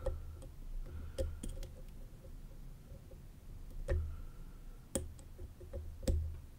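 Faint, scattered metallic clicks of a hook pick and tension wrench working the pins inside an Abus Titalium padlock's Extra Class cylinder, with a few sharper ticks about four and five seconds in.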